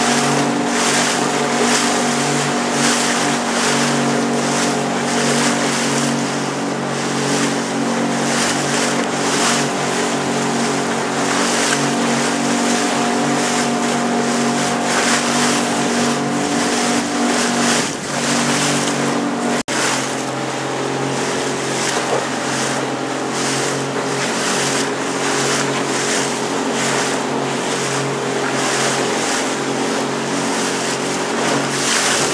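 A small motorboat's engine running steadily under way, with a constant rush of water and wind over the microphone. The engine note dips briefly about two-thirds of the way through, just before a split-second gap in the sound.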